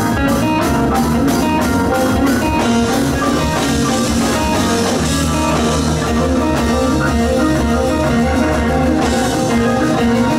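Live rock band playing an instrumental passage: electric guitar, bass guitar, organ and drum kit, loud and continuous.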